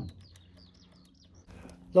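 A small bird chirping a quick run of short, high notes in the first second or so, faint over a quiet outdoor background.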